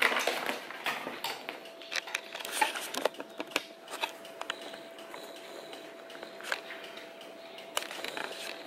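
A plastic baby feeding seat being handled and set on a wooden chair: scattered knocks, clicks and strap rustles, close together for the first few seconds and then only now and then.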